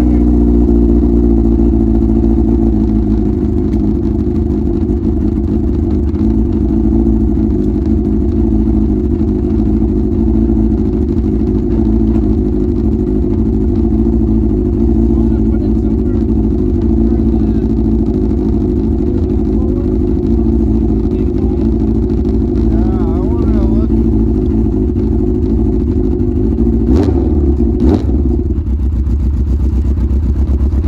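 Yamaha RX1 snowmobile's 1000cc four-stroke four-cylinder engine idling steadily at the exhaust tips, with a bit of a sputter at idle: the carburettors need cleaning. Two sharp knocks come near the end.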